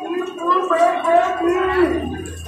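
A marching crowd chanting a protest slogan in unison, the voices rising and falling in drawn-out phrases.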